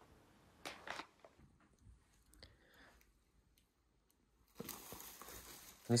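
Paper crinkling and rustling from handling a tissue-paper piñata: a short crinkle about a second in, a few faint clicks, then a longer, soft rustle of the paper fringe near the end.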